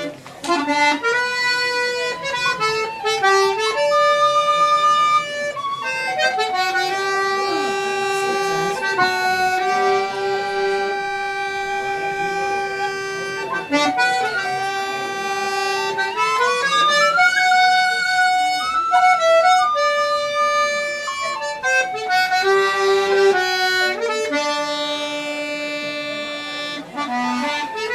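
Button accordion and tin whistle playing a slow Irish air together: a slow melody of long held notes, some held for several seconds, with a few slides between pitches.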